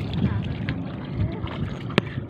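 Wind rumbling on the phone's microphone over an open tidal flat, with scattered faint clicks and a sharp click right at the end.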